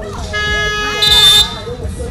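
A referee's whistle blows one short blast about a second in, the loudest sound here, over a steady electronic tone that sounds for about a second, with voices around the court.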